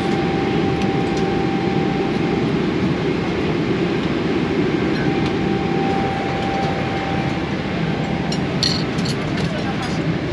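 Steady low drone of an airliner cabin in flight, the engine and airflow noise heard from inside the seat. A few light clicks near the end.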